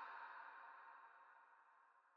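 Near silence: a faint ringing echo tail dies away over about a second and a half, then nothing.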